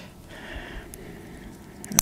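Quiet rustling of a light's cable being handled, with a couple of sharp clicks near the end as the wires are reconnected the right way round.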